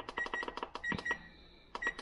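Electric range's oven control panel beeping with each button press as the oven temperature is set: about five short high beeps with faint clicks, and a brief pause past the middle.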